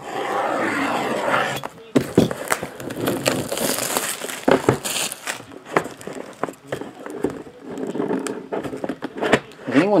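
A box-cutter blade slicing the plastic shrink wrap on a cardboard trading-card box, then the film being torn away and crinkling, with scattered clicks and taps of fingers handling the box.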